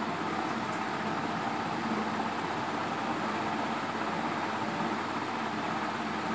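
Steady background room noise: a constant low hum and hiss, with no distinct strokes or knocks.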